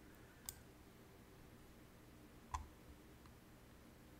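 Near silence broken by three scattered computer mouse clicks, the loudest a little past halfway.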